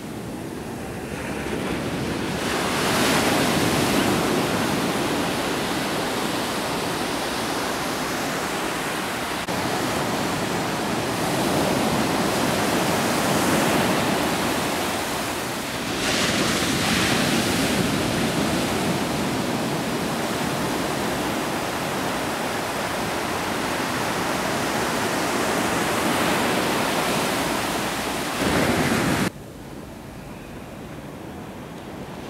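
Ocean surf breaking and washing on a beach, swelling and easing every several seconds, then cutting off suddenly near the end.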